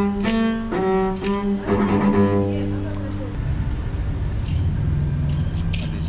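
Solo cello playing a melody that ends on a long held note about halfway through, which then fades away. Short bright jingles sound at the start and again near the end.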